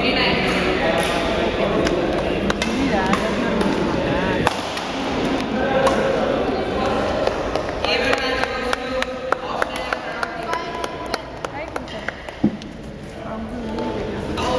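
Badminton rackets striking a shuttlecock: a series of sharp clicks, with people talking in the background.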